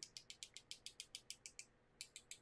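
Faint quick scratching strokes, about eight a second, from a paintbrush being worked briskly. They thin out and stop near the end.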